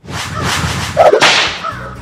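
Whip-crack sound effect over a swishing whoosh, with the loudest crack about a second in.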